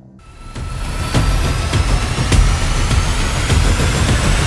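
An edited rising whoosh sound effect: a hiss that swells up over about the first second and holds loud, with faint tones gliding steadily upward and a few sharp hits, leading into a title sting.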